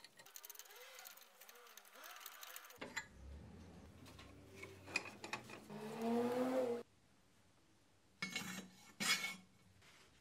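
Light metal-on-metal scraping as a steel bolt is turned by hand in a nut welded to a small square steel tube held in a bench vise. This is followed by louder metal handling and a rising squeal of steel rubbing on steel as the tube is worked loose from the vise jaws. Two short knocks of metal come near the end.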